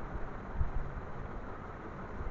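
Steady low background noise, a hiss and rumble, with a soft low thump about half a second in.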